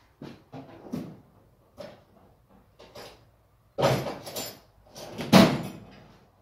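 A series of knocks and gritty scrapes from handling the hot, freshly broken-out cast iron casting in its sand mould, with two louder scraping clatters about four and five and a half seconds in.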